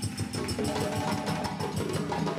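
West African drum ensemble playing a fast, dense rhythm: djembes over dundun, sangban and kenkeni bass drums, struck in quick continuous strokes.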